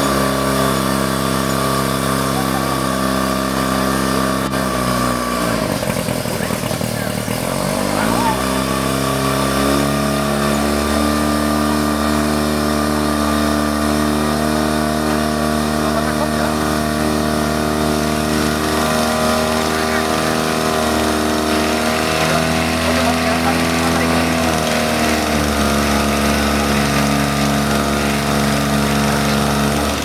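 A portable fire pump's engine running at high revs; its pitch sags about five seconds in, stays lower for a couple of seconds, then climbs back and holds steady.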